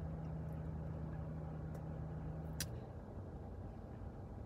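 Steady low hum of the car heard inside the cabin, which cuts off suddenly with a sharp click about two and a half seconds in, leaving a fainter rumble.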